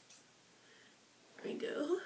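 A single quick, high-pitched snip of small hair-cutting scissors trimming a curl at the very start, then a woman's soft, half-whispered speech in the last half second.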